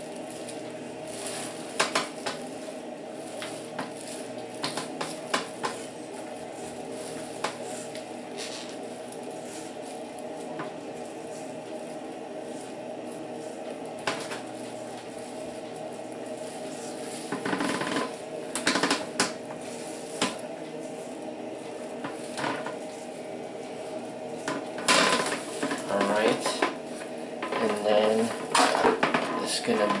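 Corded electric hair clipper with a number two guard running with a steady buzz as it shaves a toddler's head, with scattered sharp clicks and taps over it. Louder, irregular sounds come near the end.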